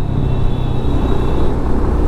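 Motorcycle engine running at a steady cruise of around 50 km/h with road and wind rumble, heard from the rider's seat among highway traffic.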